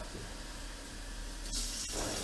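Kitchen faucet running water into a measuring cup at the sink, a steady hiss of water, with two light clicks near the end.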